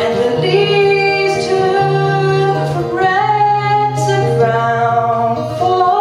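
A woman singing long, held notes to her own acoustic guitar accompaniment, the guitar chords changing every second or so beneath the voice.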